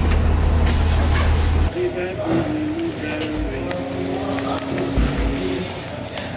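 A bus's idling engine, a steady low rumble with voices over it, cuts off abruptly under two seconds in. After that only voices are heard.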